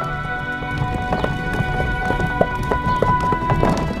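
A horse's hooves clip-clopping at a walk on stone paving as it draws a carriage, about three uneven steps a second. Background music with long held notes plays over it.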